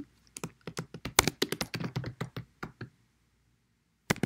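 Typing on a computer keyboard: a quick run of key clicks that stops about three seconds in.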